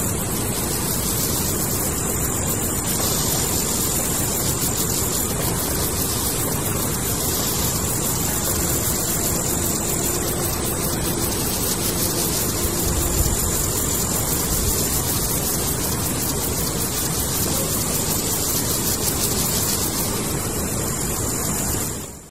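Chorthippus apricarius grasshoppers stridulating in courtship song: a high-pitched, very fast and even run of pulses that starts a few seconds in and stops near the end. Under it runs a steady loud rushing noise.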